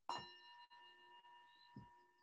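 A bell struck once, ringing on with a clear tone and several higher overtones that slowly fade. A short, soft low bump comes near the end.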